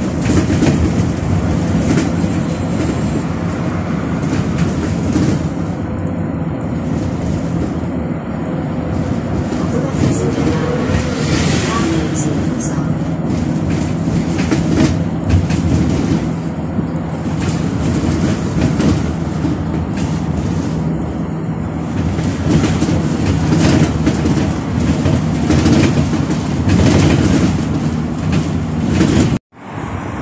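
A city bus heard from inside while it drives: a steady run of engine and road noise with scattered rattles and knocks from the cabin. The sound cuts off suddenly just before the end.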